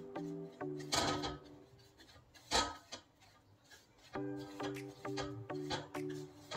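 Background music of repeating instrument notes, breaking off about two seconds in and resuming about four seconds in. Two brief rubbing scrapes, about one second and two and a half seconds in, from hands mixing a coarse dry spice mix in a steel plate.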